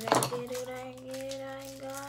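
A voice holding one long, steady note, rising slightly, after a short rustle of pin packaging at the start.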